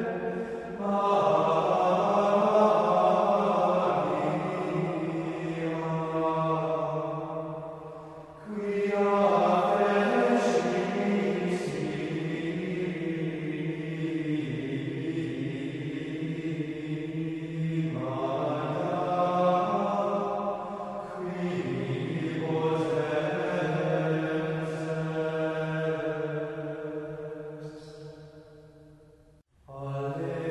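Voices singing a slow sacred chant in long, held phrases, with brief breaks between phrases about 8 and 21 seconds in. The singing dies away near the end.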